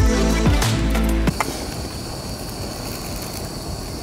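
Electronic music with a heavy bass beat that cuts off suddenly about a second in. After it, a small butane camping stove burner hisses steadily.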